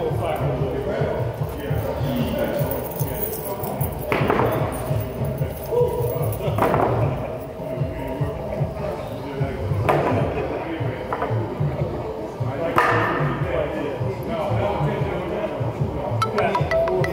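Weight plates being handled and set down on a stack on a gym floor, four knocks a few seconds apart, over background music with a steady beat.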